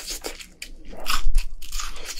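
Close-up crunchy chewing of crispy fried chicken: a run of crisp crackling crunches, loudest about a second in.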